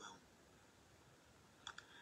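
Near silence: a pause in speech, with a word ending at the very start and two faint short clicks near the end.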